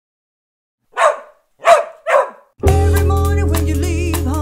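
Three sharp dog barks about half a second apart, then music with a steady bass line comes in about two and a half seconds in.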